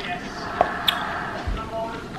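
A person chewing a lychee, with two sharp mouth clicks about half a second and a second in and a soft low thud a little later, over a faint voice from a television.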